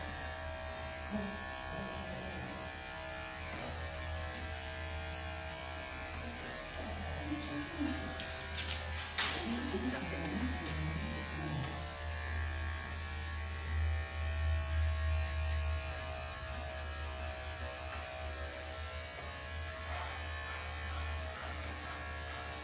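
Electric dog grooming clippers running with a steady hum, shaving a shih tzu's legs and feet close, a little louder for a few seconds past the middle.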